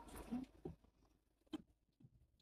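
Nearly quiet car interior with faint low shuffling in the first moments and a single short click about one and a half seconds in.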